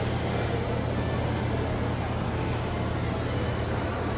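Steady background noise of a shopping mall atrium: a constant low hum under an even wash of general room noise.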